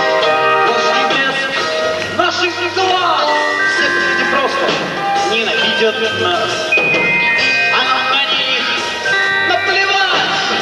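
Live rock band playing, with electric guitar holding long notes over the rest of the band, and a voice whose pitch bends and slides through the middle of the passage.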